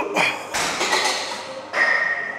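A man strains through heavy reps on a back row machine, with a loud, sudden burst of effort at the start and a long breathy exhale in the middle.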